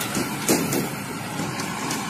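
Steady outdoor noise with a motor vehicle's engine running, and a short faint knock about half a second in.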